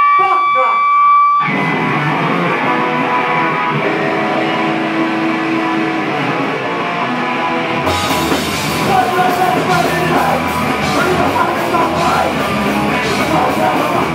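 Live rock band starting a song with electric guitars. A single steady high note is held for the first second and a half, then the guitars start playing, and drums with cymbals come in about eight seconds in.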